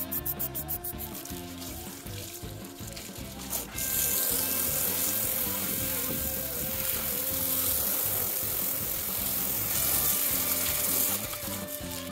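A trigger spray bottle pumped rapidly, about five squeezes a second, fading out in the first second; then from about four seconds in, a steady hissing water jet rinses the cleaner off the metal checker plate for about seven seconds, over background music.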